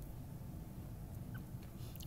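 Quiet room tone: a steady low background rumble in a pause between spoken phrases.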